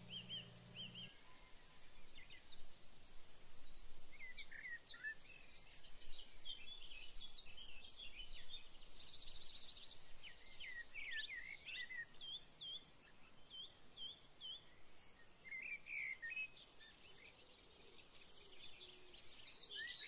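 Several songbirds singing at once: overlapping chirps, short sweeps and rapid trills with no break.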